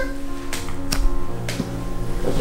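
A soft foam squishy shaped like a bar of soap is squeezed under a thumb, giving a few short clicks over background music.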